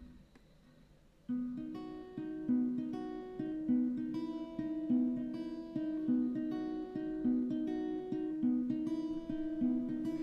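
Acoustic guitar playing the intro of a song: single picked notes in a steady, repeating pattern, starting about a second in.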